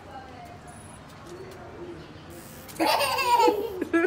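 A small child laughing loudly, breaking out about three seconds in, over faint voices in the background.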